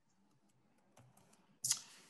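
A few faint computer-keyboard typing clicks about halfway through, then a sudden louder rush of noise near the end.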